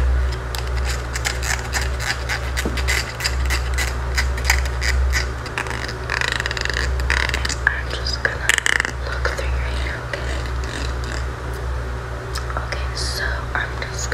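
Close-up ASMR whispering with quick crisp clicks and scratchy sounds near the microphone, over a steady low hum; the clicks are densest in the first half.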